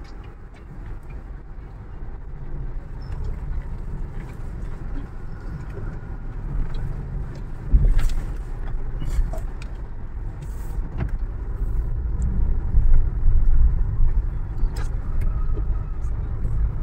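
Low rumble of engine and road noise inside a moving car's cabin, growing louder over the stretch, with a single thump about eight seconds in.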